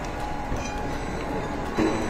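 Steady food-court background hubbub, then near the end a restaurant order pager goes off suddenly and loudly, signalling that a pizza order is ready for pickup.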